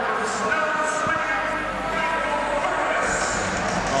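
Steady murmur of a crowd of spectators, indistinct voices talking over one another in an indoor pool hall.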